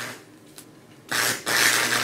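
Stick (arc) welder striking an arc on a laptop's thin metal parts: a loud, noisy hiss starts suddenly about a second in, breaks off for a moment and then carries on as the arc blows through the metal.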